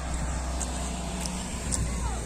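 A motor vehicle running, heard as a low steady rumble with a faint engine hum.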